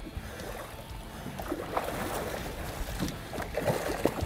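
Water splashing and sloshing as a hooked king salmon thrashes at the surface beside a boat, getting busier in the second half with a sharp splash at the very end.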